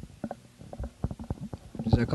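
Handling noise on a handheld microphone: a string of soft, irregular low clicks and thumps as it is moved about, with a heavier thump near the end.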